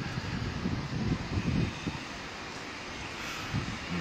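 Steady low outdoor background rumble, a faint murmur of voices in the first couple of seconds.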